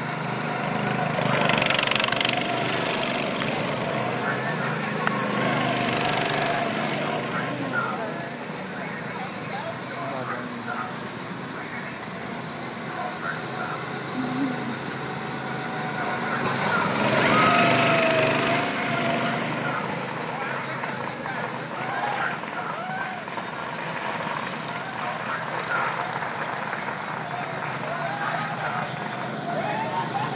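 Go-kart engines running as the karts lap the track, the sound swelling and fading as they pass close by, loudest as a pass about two-thirds of the way in.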